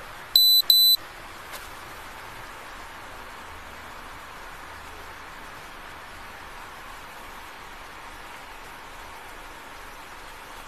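Two short, high-pitched electronic beeps in quick succession within the first second, from an Axon Body 2 police body camera, followed by a steady faint hiss of background noise.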